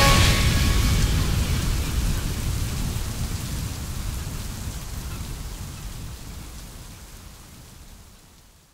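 The song's closing noise effect, a rain-like hiss with a low rumble under it, fades steadily out to silence after the last notes of the track stop about half a second in.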